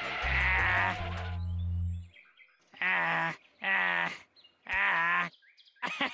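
Cartoon background music with a stepping bass line for about two seconds. It is followed by three short, quavering vocal bursts from a man, gleeful chuckles.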